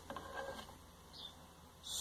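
Faint scraping and a light click of a spoon working wet blended corn through a plastic sieve over a metal pot, to strain off the pulp.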